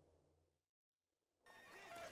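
Near silence at a fade between scenes: a faint low hum dies away, there is a moment of dead silence, and faint sound fades back in near the end.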